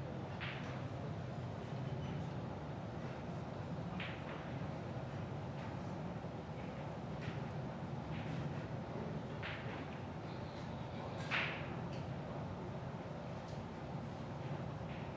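Quiet playing-hall room tone with a steady low hum, broken by a few brief, soft scraping swishes; the most distinct one comes about eleven seconds in.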